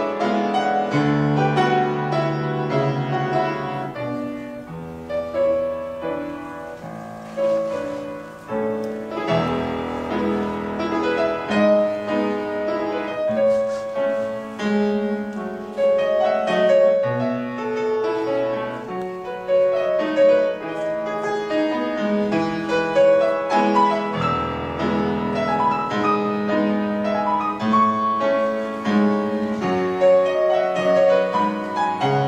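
Solo piano playing classical-style ballet class accompaniment, a continuous run of melody over chords.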